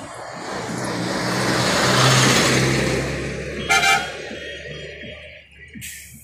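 A motor vehicle passing close by on the road, its engine and tyre noise swelling to a peak about two seconds in and fading away, with a short horn toot near four seconds in.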